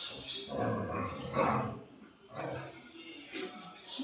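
An 11-month-old Rottweiler puppy vocalizing in a few short bouts during excited greeting play.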